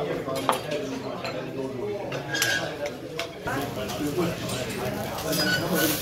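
Knife and fork clinking against a stone carving board as a cooked steak is sliced, with a few sharp clicks, under voices.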